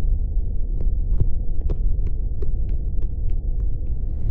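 A loud, low throbbing drone, a film sound effect, with a quick run of sharp ticks, about three a second, starting about a second in.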